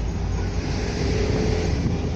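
Cars driving past on a road close by: a steady rush of engine and tyre noise.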